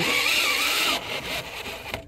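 Cordless DeWalt drill boring into the old plastic rear suspension bush of a Citroën C4 to weaken it so it can be knocked out. It runs loud and steady for about a second, then drops to a quieter, uneven run.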